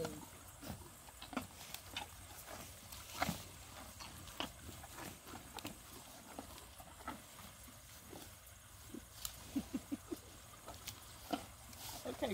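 Cow chewing a raw sweet potato close by: irregular sharp crunches and clicks.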